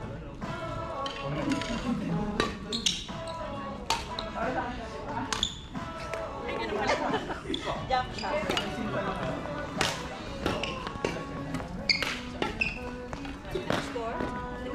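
Badminton rackets hitting a shuttlecock back and forth in a rally, a string of sharp hits about a second apart, with voices talking in the background.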